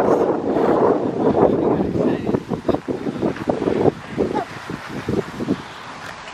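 Wind buffeting the camera microphone: a loud, dense rumble for the first couple of seconds, then breaking into rapid, irregular thumps that ease off near the end.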